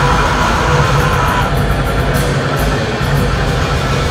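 Heavy metal band playing live: distorted electric guitar and bass with drums, loud and dense with no let-up.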